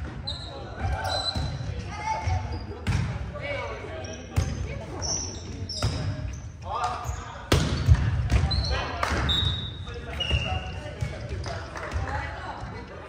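Volleyball rally on a hardwood gym court: the ball is struck sharply several times by players' hands and forearms, every second or two, with short high sneaker squeaks on the floor between hits, all ringing in the large hall.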